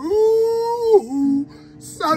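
A man singing, his voice sliding up into one long high held note that breaks off after about a second into a short lower note, then fades.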